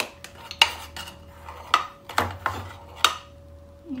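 A spoon clinking against a ceramic plate and plastic containers while sugar and cornstarch are spooned onto diced raw chicken, giving about six sharp taps with brief ringing. A faint steady hum runs underneath.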